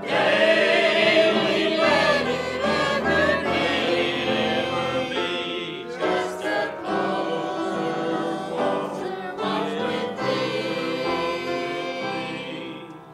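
A mixed choir of men's and women's voices singing a hymn together, with a brief break between phrases about six seconds in.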